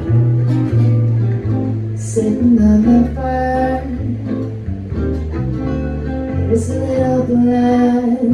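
Live acoustic folk song: a woman sings with a steady plucked acoustic guitar accompaniment, and a fiddle plays along.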